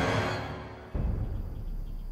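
Tense orchestral film score swelling and then fading, broken about a second in by a sudden deep low boom that leaves a low rumble under it.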